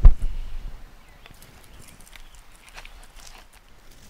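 A single low thump at the start as a person sits down on a step with a potted plant, then faint rustling and small clicks from handling the plastic nursery pot and its stems.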